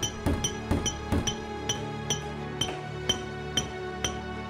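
Hammers striking chisels on stone, heard as a quick, uneven stream of bright metallic clinks, about three or four a second, over background music with sustained notes.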